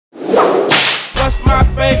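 A whip-crack sound effect, two quick swishes in the first second. About halfway a hip hop beat with heavy bass comes in, and a rapped vocal begins near the end.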